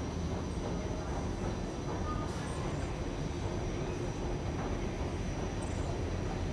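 Escalator running with a steady low mechanical rumble and hum.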